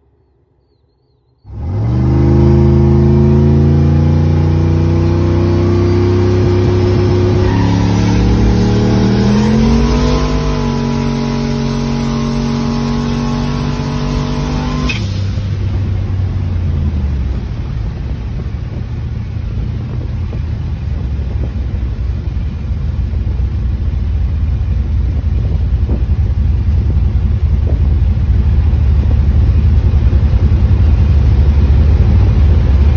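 Car engine, loud, starting suddenly after a second or so of near silence: its note holds steady, then climbs in pitch twice as the car accelerates. About halfway through, the sound switches to engine and road noise heard from inside the moving car, growing louder as it gathers speed.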